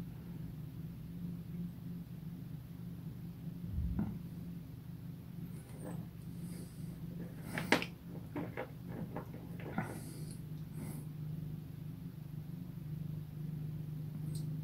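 Quiet room with a steady low hum and a few faint clicks and taps, the clearest a soft knock about four seconds in and a sharper click near the eight-second mark, as a small plastic miniature is handled and painted with a fine brush.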